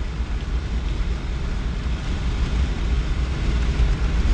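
Steady low rumble of road and engine noise inside the cab of a moving truck.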